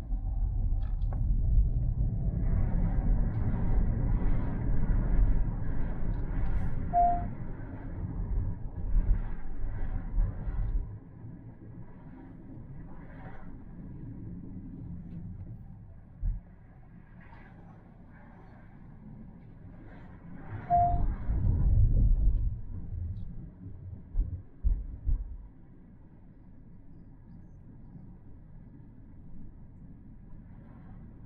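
Low rumble of a car on the move, strongest for the first ten seconds or so and again in a brief swell about two-thirds of the way through, quieter in between. Two short beeps sound, one about a quarter of the way in and one about two-thirds through.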